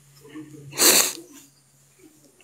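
A man sneezing once: a short breath in, then one sharp sneeze a little under a second in.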